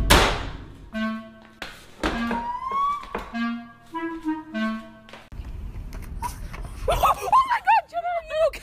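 A short comic tune of separate pitched notes, one of them sliding upward about three seconds in, after a brief burst of noise at the very start. A voice comes in near the end.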